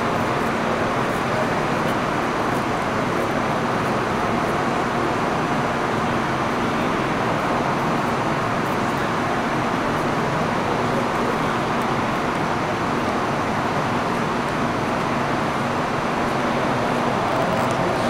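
Steady rush of a clean room's air-handling system, filtered air blowing continuously, with a faint low hum underneath.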